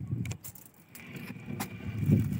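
Metal clinks and rattles of a wire-mesh crab trap being handled, with several sharp clicks over dull low knocks.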